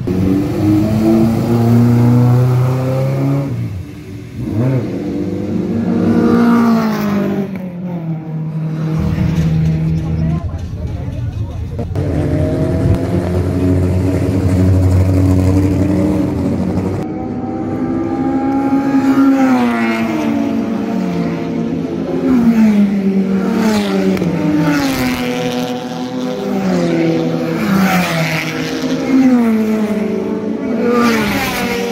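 Race car engines revving and idling as cars pull out of the pit lane. In the second half, a race car accelerates hard through its gears: the engine pitch climbs, drops at each upshift, and climbs again, several times over.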